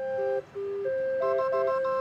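Small 20-note hand-cranked street organ playing a tune in clear, held notes, with a brief break about half a second in.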